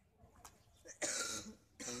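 A person coughing once, a single harsh cough about halfway through.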